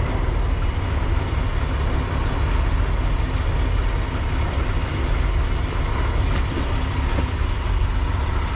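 Freightliner Cascadia semi-truck's diesel engine idling, a steady low rumble heard from inside the cab. A few faint clicks and rustles of handling come in the second half.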